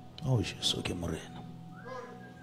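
A man's brief vocal exclamation through the microphone about a quarter-second in, falling in pitch, followed by a few hissing sounds, over a quiet held keyboard chord.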